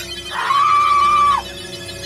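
A woman screams once in shock, a single held, high-pitched scream lasting about a second that starts about half a second in and then cuts off, over soft background music.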